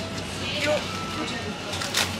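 Plastic-wrapped enoki mushroom packs rustling and ticking as they are put into a wicker basket, over a low steady hum.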